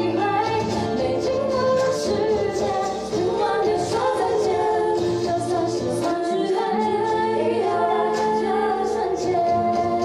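Female vocals singing a song through handheld microphones and a PA, over a steady instrumental accompaniment.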